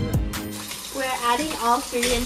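Background music ends about half a second in, and a steady hiss of water running from a kitchen tap into the sink takes over, with voices talking over it.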